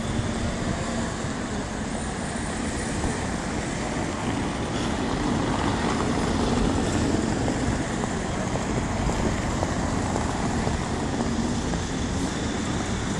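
Steady city street ambience: road traffic noise with a constant outdoor hum, with no single sound standing out.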